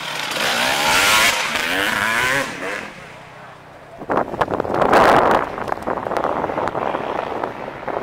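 Off-road enduro motorcycle engine revving up and down as the bike accelerates past and away, its pitch rising and falling over the first two and a half seconds before it drops off. A louder rush of noise follows about four to five seconds in.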